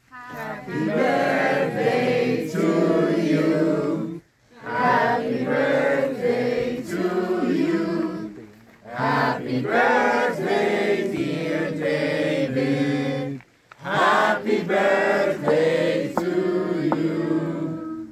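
A crowd of party guests singing a birthday song together, in four sung lines of about four seconds each with brief breaths between them.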